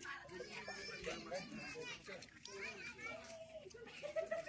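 Faint, indistinct chatter and calls of several people at once, some voices high-pitched like children's, none of it clear enough to make out words.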